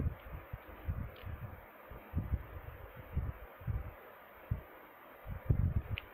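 Handling noise of a lip lacquer tube being opened: irregular soft low thumps and knocks over a steady faint hiss, the loudest thump about five and a half seconds in.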